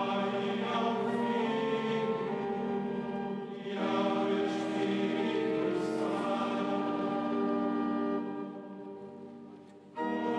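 A choir singing a slow liturgical chant of Vespers in long held notes. One phrase ends about three and a half seconds in and the next begins; the singing dies away near the end.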